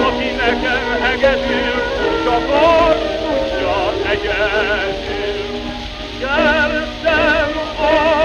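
Hungarian gypsy band playing an instrumental passage of a magyar nóta, a lead violin with wide vibrato over the band's accompaniment, in a narrow-band old recording.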